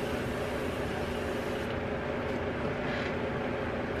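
Electric fan blowing steadily: an even rush of air with a low hum. A brighter hiss lies over it for the first second and a half.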